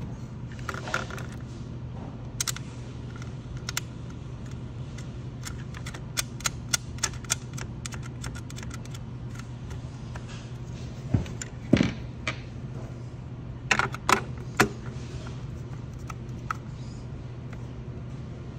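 Small metal parts and hand tools clicking and clinking during work on a fryer's contactor box, with a quick run of light ticks and a few louder knocks past the middle, over a steady low hum.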